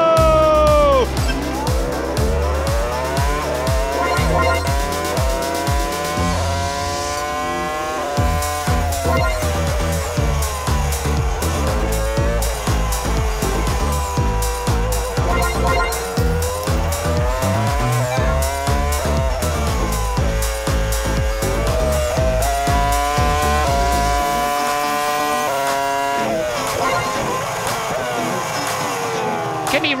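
Onboard sound of a 2005 McLaren-Mercedes Formula 1 car's 3.0-litre V10 at racing speed. The engine screams up through the revs and drops back again and again as it shifts gears and brakes for corners. A music bed with a heavy bass runs underneath until near the end.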